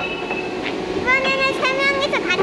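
Children pressing keys on an upright piano, with notes held in the first second. A child's high voice rises and falls over the notes in the second half.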